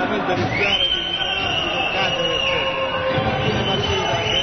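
Steady murmur of an arena crowd, with a long high-pitched whistle tone that starts about half a second in, holds for some two and a half seconds and drops slightly in pitch before stopping.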